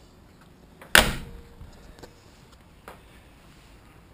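A car door on a 1971 Ford Escort Mk1 being shut: one sharp slam about a second in, dying away quickly.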